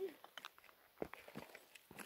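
Quiet footsteps on dry, rocky ground: a few separate steps and scuffs.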